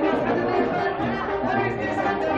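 Mexican banda playing live: sousaphone, trumpets and trombones sounding steady brass notes. Loud crowd chatter and voices run over the music.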